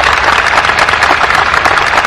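Large audience applauding: a dense, steady clatter of many hands clapping.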